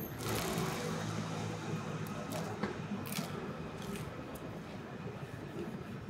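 A person chewing a crisp-crusted slice of sourdough pizza, with small crunching clicks over a low, steady street hum.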